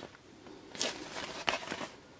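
Paper pages of an instruction booklet being handled and turned: a few short rustles, the clearest a little under a second in and about a second and a half in.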